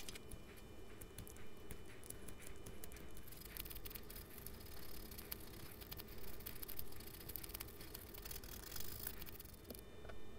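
A small wooden part being hand-sanded with sandpaper: quick, scratchy rubbing strokes with scattered clicks. The strokes get denser and louder about three seconds in and stop just before the end.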